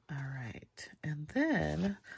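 A woman's voice, two short utterances with a rising and falling pitch; no other sound stands out.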